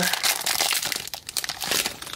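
Foil trading-card booster pack wrapper crinkling and crackling in the hands as it is opened. The crackle is loudest at first and dies away near the end.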